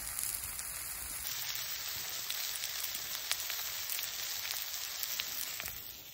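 Burgers and onions sizzling in a frying pan on a portable gas camping stove: a steady hiss with small scattered pops.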